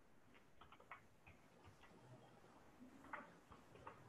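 Faint, irregular keystrokes on a computer keyboard, about a dozen light clicks as a formula is typed out.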